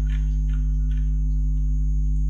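Steady electrical mains hum, a low buzz with overtones, carried through the recording chain and unchanged throughout.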